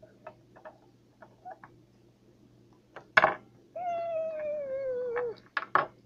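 Light clicks of small plastic toy figures being moved on a wooden table, then a short 'ah' about three seconds in. It is followed by a child's long, falling 'ooh' in a play voice.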